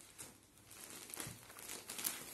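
Faint rustling of cotton suit fabric being lifted, unfolded and spread out by hand, with a few light soft taps.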